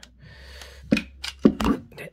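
Sharp clicks and clacks from an AK-47-style .22 semi-automatic rifle as its magazine and action are worked by hand to clear a stoppage left by a snap cap that failed to feed, a cluster of clicks about a second in.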